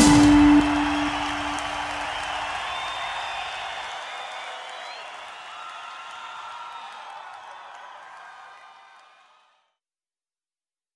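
The last note of an electric violin rock cover cuts off sharply about half a second in, with a low tone dying away over the next few seconds. Under it and after it, a live audience cheers and applauds with whoops, and the applause fades away gradually until it is gone near the end.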